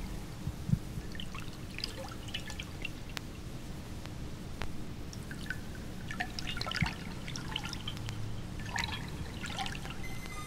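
Water-drip soundscape in an ambient electronic track: irregular, scattered drops and trickling over a low steady rumble.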